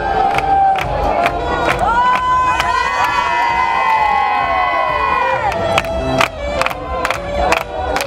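A group of young women cheering and screaming together over a crowd, their voices swelling into one long collective shout that rises and falls for several seconds. A steady beat of sharp hits carries on before and after the shout.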